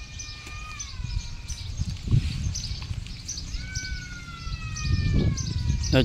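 A bird calling: two long whistles, each slowly falling in pitch, the second starting about three and a half seconds in, over a steady low rumble.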